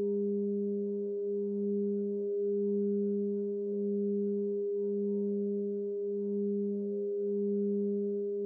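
A steady humming drone of held tones: a low tone that pulses about once a second under a steadier, higher tone, with faint overtones above.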